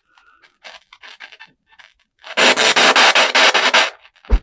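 Spirit box sweeping through radio frequencies: short choppy snippets of static, then about two seconds in a loud rush of static that stutters at several pulses a second for about a second and a half.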